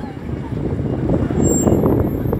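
Busy city-street traffic noise with a red double-decker bus approaching the stop: a dense low rumble of engine and tyres. A brief faint high squeal comes near the end.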